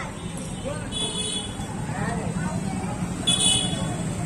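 Street background with faint distant voices and a steady low hum, broken twice by a short, high-pitched horn toot, about a second in and again near the end.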